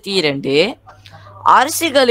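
A young voice reading aloud in Tamil, with a brief pause about a second in and a faint low hum underneath.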